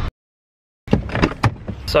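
Dead silence for most of a second, then a few short knocks and rustling inside a car, with speech starting at the very end.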